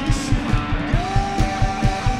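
Live rock band playing electric guitars, bass and drums on a steady driving beat of about three drum hits a second. A long held high note slides up into place about a second in.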